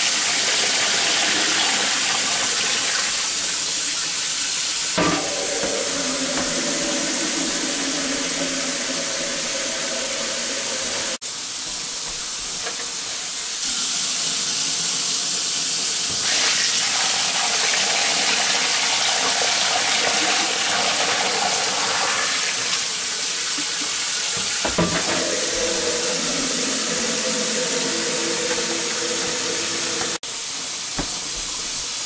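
Water pouring steadily from a hose or tap into a wringer washer's tub full of clothes, filling it with rinse water; the sound breaks off abruptly about 11 seconds in and carries straight on.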